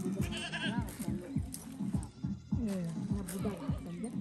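A goat bleating, a quavering call about half a second in, amid other pitched calls or voices.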